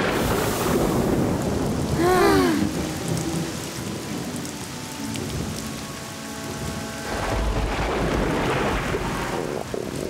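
Heavy rain pouring down in a thunderstorm, with a short rising-and-falling cry about two seconds in and a deep thunder rumble swelling about seven seconds in.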